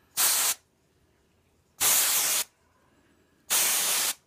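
Aerosol can of L'Oréal Paris Root Cover Up temporary root colour spraying onto hair in three short hissing bursts, the first the briefest, with silent pauses between. The spray comes out cold.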